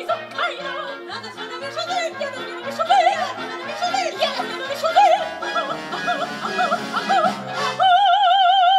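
Music: a high singing voice in short, wavering, ornamented phrases over a steady bass line of about two notes a second.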